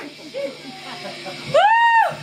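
Low crowd chatter, then about one and a half seconds in a loud, high-pitched, held whoop from a woman's voice, rising then holding.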